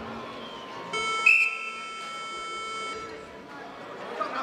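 Arena time buzzer sounding for about two seconds to end a wrestling period, one steady electronic tone that begins about a second in, with a sharp loud burst just after it starts.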